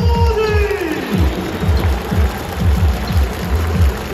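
Stadium PA music with a fast, steady, thumping beat. A long drawn-out voice note fades out about a second in.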